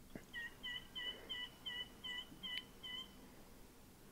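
A bird calling, a series of eight short, evenly repeated notes at about three a second, faint.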